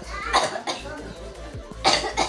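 Brief bits of a person's voice, then a short, sharp cough near the end.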